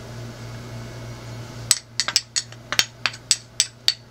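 A metal spoon tapping against the rim of a glass bowl, about a dozen quick, sharp clinks starting a little under two seconds in, knocking salt off into flour. A steady low hum runs underneath.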